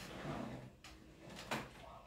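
Soft rustling and two light knocks, the second louder, as sneakers and flip-flops are handled and set down on a rug.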